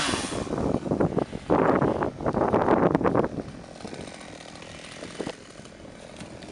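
Chainsaw cutting up dead branches, revving and biting in uneven bursts for about three seconds, then dropping away to a much quieter background.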